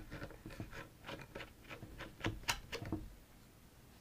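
Cocktail bottle and measuring jigger being handled over glasses: a quick run of light clicks and taps as the cap comes off and the syrup is measured out.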